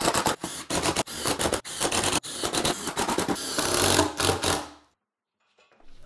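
Cordless drill driving screws through a 2x4 into plywood, a rapid run of clicks and grinding in several short spurts that stops about a second before the end.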